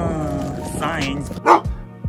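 A person's long, drawn-out exclamation of amazement ("wah!"), then a short, loud yelp about a second and a half in, over background music.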